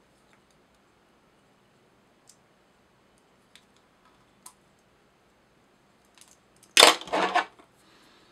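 Faint scattered clicks of a whip-finish tool and thread as the thread is whipped off at the hook eye, then a brief, louder clatter about seven seconds in.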